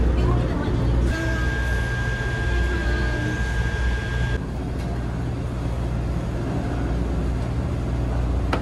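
Low, steady drone of a passenger ferry's engines heard inside the cabin, with a thin steady high whine for a few seconds in the first half.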